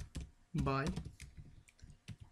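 Computer keyboard keystrokes: a couple of sharp clicks at the start, then several lighter, scattered clicks in the second half.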